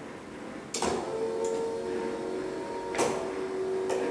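Elevator machinery: a click, then a steady electric motor hum with a few pitched tones lasting about three seconds, with another click partway through.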